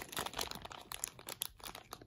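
Sealed clear plastic parts bag crinkling faintly as it is turned in the hands: a run of small, irregular crackles.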